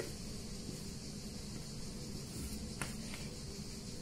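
Quiet steady room hum and hiss, with two faint light ticks about three seconds in.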